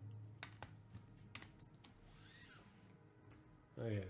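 Hard plastic card cases clicking and tapping lightly as cased cards are handled and set down, a few separate clicks in the first couple of seconds.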